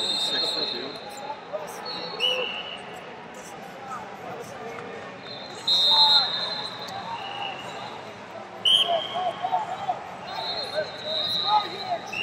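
Referees' whistles from elsewhere in a wrestling arena: several short and longer blasts at two different pitches, the loudest about halfway through, over a murmur of arena noise with scattered knocks.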